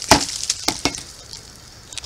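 Handling noise of a rusted iron find against a fallen log: four or five sharp clicks and knocks in the first second, then quiet rustling of dry leaves and twigs.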